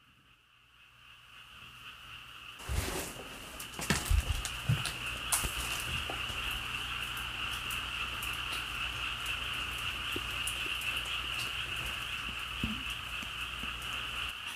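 A steady, high-pitched chorus of night-calling insects and frogs, coming in after about a second of silence. A few faint knocks sound in the first seconds as the camera is carried through the room.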